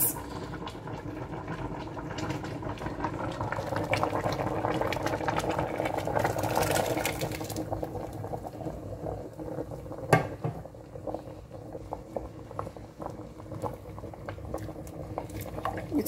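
A pot of pepper soup bubbling on the stove as a thick green purée of spinach and scent leaf is poured in from a metal bowl. The sound swells for a few seconds midway, and there is a single sharp knock about ten seconds in.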